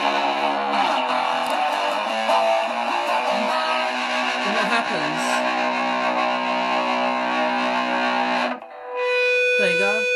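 Electric guitar played with distortion through a small amplifier, chords ringing for about eight and a half seconds. When the strings are let go, a steady high feedback tone sets in near the end.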